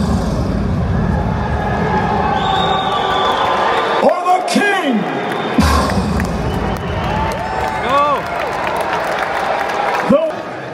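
Arena ring announcer's voice over the PA, stretching words into long rising-and-falling calls, over loud bass-heavy music and a cheering crowd. The music drops out briefly about halfway through.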